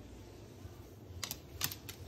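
Moluccan cockatoo's claws clicking on a hardwood floor as it gets down and walks, a handful of sharp light clicks in the second half.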